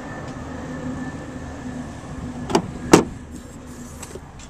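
Rear swing-out tailgate of a 2004 Honda CR-V being unlatched and opened: two sharp clicks about half a second apart, the second the louder, over a steady low hum.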